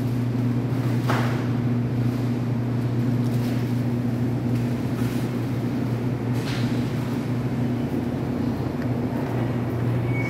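Steady low electrical hum of a supermarket's refrigerated display freezers, with two brief clicks, one about a second in and one past the middle.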